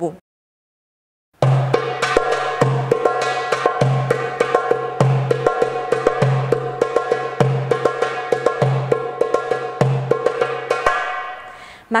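Darbuka (goblet drum) playing the maqsoum rhythm: deep dum strokes about every 1.2 s with quick, sharp tek strokes and fills between them. It starts abruptly after about a second of silence and fades out near the end.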